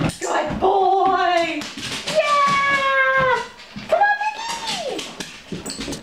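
A woman's voice in high, long-drawn sing-song tones, the sliding pitch of praise for a dog, after a couple of sharp knocks right at the start as the golden retriever lands off the couch.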